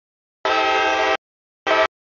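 Freight locomotive's air horn sounding for a grade crossing: a long blast about half a second in, then a short blast near the end, part of the long-long-short-long crossing signal.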